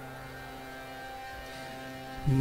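A faint, low drone note held steady from an instrument in the devotional ensemble, sustained in the pause between chants.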